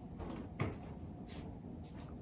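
A soft knock about half a second in, then a couple of faint clicks, over quiet room tone.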